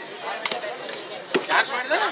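Two sharp knocks about a second apart, heavy stone weights struck or set down on hard ground, among the voices of onlookers.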